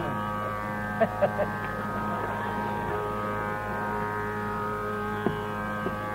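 Steady Carnatic tambura drone, with a few soft mridangam strokes about a second in and a single stroke near the end, and no flute phrase sounding out.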